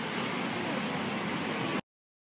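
Steady outdoor street noise while walking on a city sidewalk: an even hiss with a low hum of traffic. It cuts off suddenly near the end.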